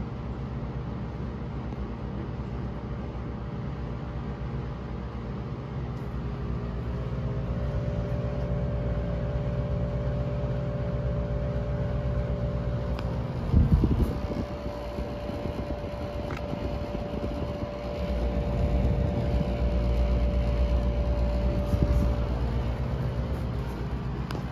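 GE PTAC packaged terminal air conditioner running after startup, its fan blowing steadily. About seven seconds in, a steady hum joins and the unit gets louder. There is a brief loud thump about halfway through.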